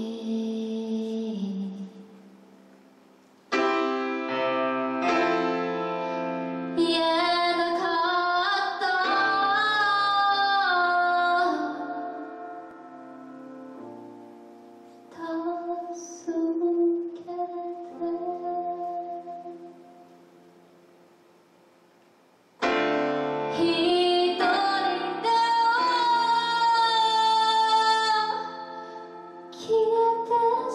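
A woman singing a ballad while accompanying herself on a grand piano. Two fuller sung phrases come about 4 seconds in and again near the end, with a softer stretch in the middle where the piano notes ring on.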